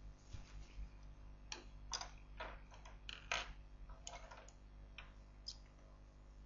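Faint, irregular clicks and short scrapes of makeup compacts and pencils being handled and put down, a handful over a few seconds.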